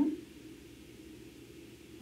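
Quiet room tone: a faint, steady low hum, with a voice trailing off at the very start.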